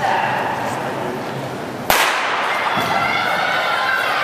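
A single starter's pistol crack about halfway through, starting a sprint race, over steady crowd chatter that grows a little louder after the shot.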